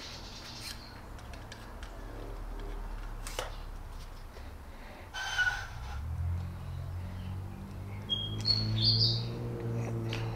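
Plastic Lego Technic parts of a model chassis being handled and refitted, with a sharp click about a third of the way in. A few short, high bird chirps come near the end.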